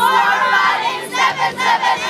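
A group of young men and women shouting together in a loud unison cheer.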